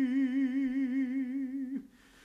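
Unaccompanied male voice singing a hymn, holding one long note with a steady vibrato. The note breaks off near the end.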